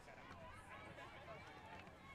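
Faint voices from across an open playing field, with players and onlookers calling and chatting, over quiet outdoor background; no close sound stands out.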